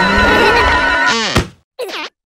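Cartoon larva characters shrieking with laughter over cartoon music. About a second in the music breaks off into a falling slide, and after a moment's silence comes a short cry near the end.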